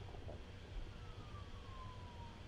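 Faint background noise of the recording room, with a low hum and a faint tone that glides down in pitch starting about a second in.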